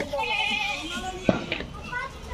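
A goat bleating once, a quavering call, followed a little over a second in by a single sharp crack.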